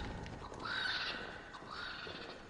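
A horse neighing, heard in two short parts, the second near the end.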